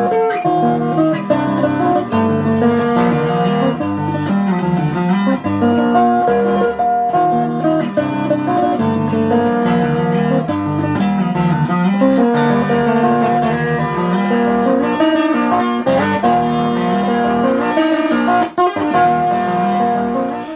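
Capoed Stratocaster-style electric guitar playing a melodic, finger-picked solo piece, many notes ringing over one another in a continuous flowing line.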